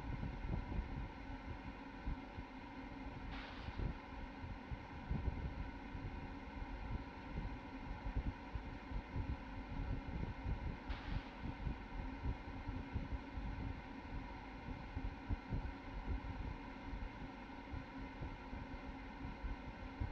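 Launch-pad ambience: low, irregular wind buffeting on the microphone over a steady hum, with two brief hisses, one a few seconds in and one about eleven seconds in.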